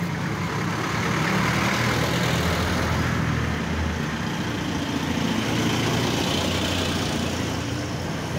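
Jeepney's diesel engine running at low speed as it drives past close by: a steady low engine drone over street noise.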